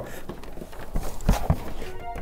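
A heavy office espresso machine being shifted and turned on a wooden desk: low scraping and handling noise, with two dull knocks about a second and a half in.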